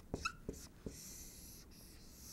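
Dry-erase marker on a whiteboard: a few light taps, then two longer high, scratchy strokes as lines are drawn.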